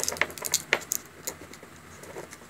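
A handful of light clicks and taps from a hand handling the lid of a Dior loose-powder jar, mostly in the first second.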